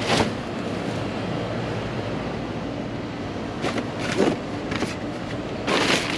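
Cardboard and plastic bags rustling and crinkling as gloved hands sort through trash in a dumpster. It comes in short bursts, loudest near the end, over a steady background noise.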